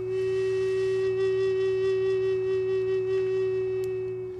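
Native American flute holding one long steady note, over a low steady hum.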